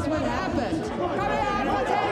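Speech: a woman calling out in a raised voice, with crowd chatter behind her.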